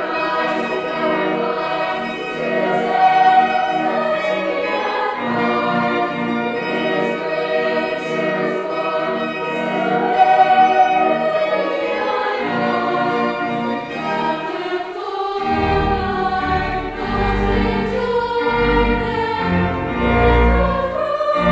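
Children's chapel choir singing a carol in parts, with low bass notes joining about fifteen seconds in.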